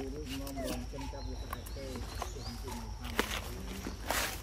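Indistinct voices of people talking in the background, the words unclear, with a few sharp clicks, one a little past three seconds in.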